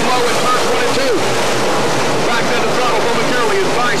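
A pack of dirt-track Sportsman race cars running at speed, their engines blending into a loud, continuous drone. Individual engine notes rise and fall as cars pass and lift for the turns.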